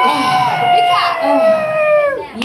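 Live-music audience cheering and whooping, several voices holding long yells that trail off downward near the end.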